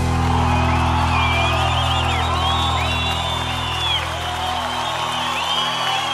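A live sertanejo band's held closing chord dying away while the audience cheers, whoops and whistles at the end of a song.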